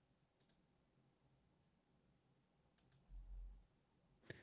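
Near silence with a few faint computer keyboard and mouse clicks, one about half a second in and more near three seconds, followed by a soft low thump.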